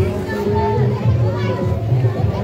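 Many children's voices calling and chattering over music with a deep, steady bass line.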